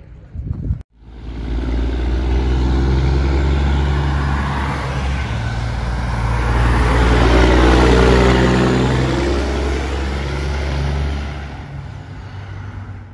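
A semi truck's diesel engine running under load as the truck passes. It grows loudest about two-thirds of the way through, then fades as the truck pulls away.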